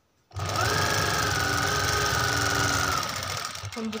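Sewing machine starting abruptly and running fast as it stitches fabric, with a steady whine, easing off near the end.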